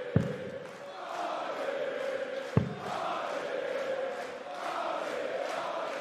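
Two darts striking the dartboard with sharp thuds about two and a half seconds apart, over a large arena crowd chanting steadily.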